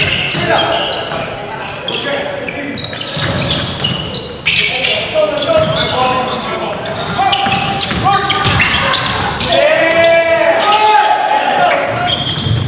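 Basketball game on a hardwood gym floor: the ball bouncing, sneakers squeaking and players shouting. A burst of squeaks comes near the end.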